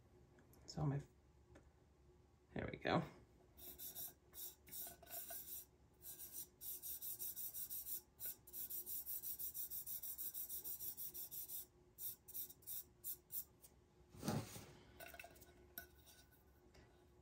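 A fingertip rubbing dry mica powder onto the painted surface of a tumbler in rapid back-and-forth strokes, a soft repeated rasp that runs from about three seconds in until about twelve seconds in.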